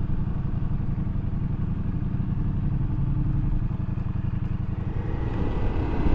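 Ducati Multistrada V4S's V4 engine running steadily as the motorcycle rides along, a continuous low pulsing drone.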